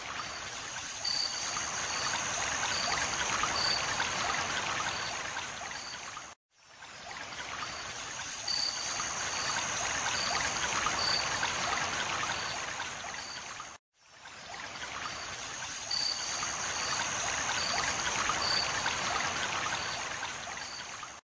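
A looped recording of running water, a steady rushing trickle, which cuts out briefly and restarts the same loop twice, about every seven and a half seconds.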